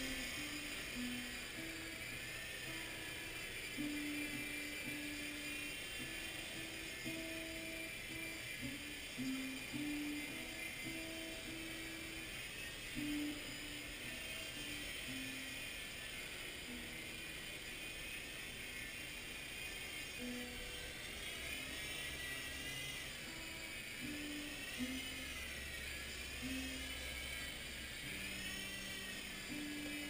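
Faint music with a simple stepping melody, over the thin whine of a Blade mCX micro coaxial helicopter's rotor motors rising and falling in pitch as the throttle changes in flight, most plainly in the second half.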